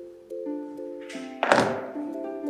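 Background music with held notes, and about a second and a half in a single loud thunk of a pair of pliers set down on a cutting mat, just after a brief rustle.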